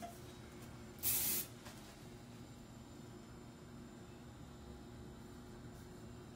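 One short spray of hairspray, a brief hiss about a second in.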